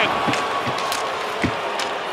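Ice hockey arena crowd noise right after a big save, with several sharp knocks and clacks of sticks and puck on the ice.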